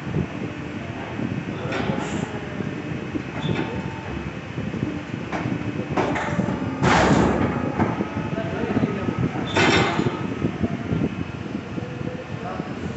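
Stacks of paper being slid across the steel table of a guillotine paper cutter: several short, loud sliding swishes over a steady workshop hum.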